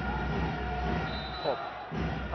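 Arena crowd noise: a steady low rumble of many spectators, with a short voice about one and a half seconds in.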